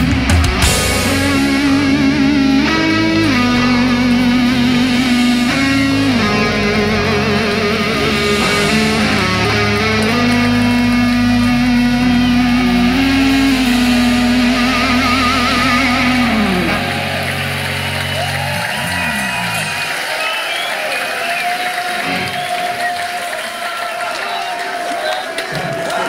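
Live heavy metal band playing an instrumental passage: electric guitars with held, vibrato-laden lead notes over bass guitar and drums. About two-thirds of the way through, the bass and low end drop away, leaving the guitars playing more quietly.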